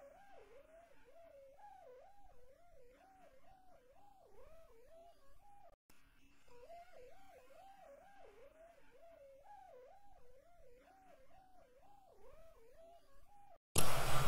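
A faint, warbling electronic tone, wavering up and down about twice a second like a theremin, in two stretches with a short break near the middle. Just before the end it gives way to a sudden loud, bright burst of sound.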